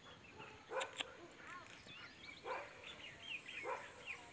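Bhotiya dog barking three times, about a second or more apart, the first the loudest, with small birds chirping in the background.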